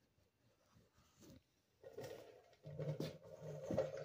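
Phone camera being handled and set in place: faint muffled rustling of shirt fabric against the microphone with a few small knocks, starting about two seconds in after a near-silent stretch.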